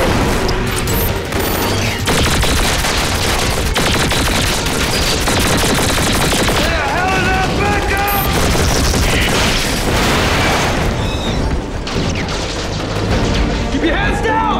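Sustained gunfire and booming explosions from a TV battle-scene sound mix, with a dramatic music score underneath.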